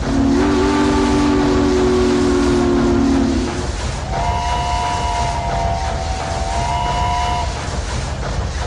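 Steam-train sounds: a low, chord-like horn blast held for about three and a half seconds, then a higher steam whistle for about three seconds, over a steady rumble of a running train.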